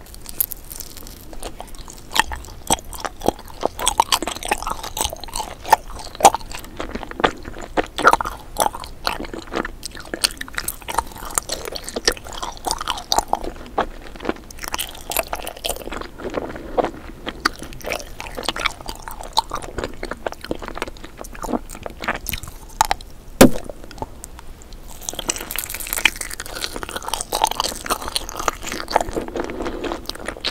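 Close-miked chewing of jelly candy: wet mouth sounds with many short clicks and pops, the sharpest about 23 seconds in.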